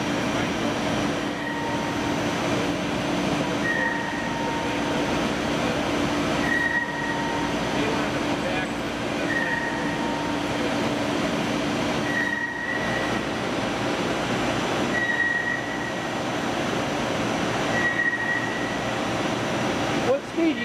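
Mazak Megaturn a12nx vertical turning center cutting metal with a spindle-mounted tool under coolant spray: steady machining noise. A short high whine comes back about every three seconds, and a steady low hum stops about two-thirds of the way through.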